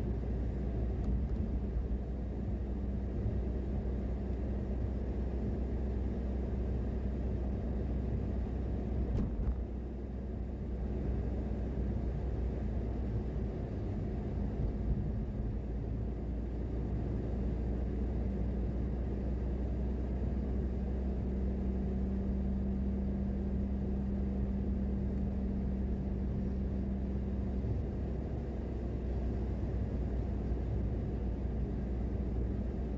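Car driving at steady speed, heard from inside the cabin as a low, even rumble of engine and road noise. A steady hum rises above the rumble for several seconds past the middle.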